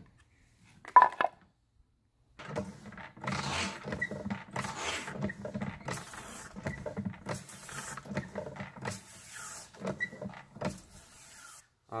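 Handling of a plastic knapsack sprayer tank: a sharp knock about a second in, then a run of irregular rubbing and clattering noises with bursts of hiss, roughly one a second.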